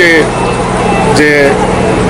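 A man speaking a few short words over steady street noise with a low hum underneath.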